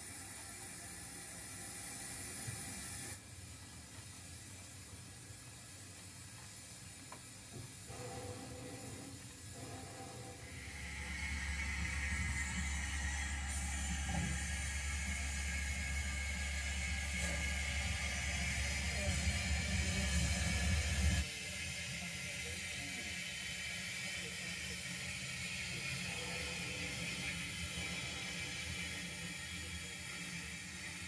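An O gauge model train running on the layout. A steady low hum starts about a third of the way in and cuts off suddenly about two-thirds through, with light clicking of the mechanism and wheels over a steady hiss.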